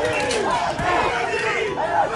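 A street crowd of protesters shouting and yelling, many voices overlapping at once.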